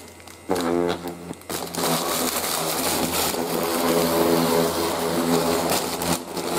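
A small rechargeable wand body massager's vibration motor running with a steady hum. It starts about half a second in, drops out briefly near a second and a half, then runs on steadily.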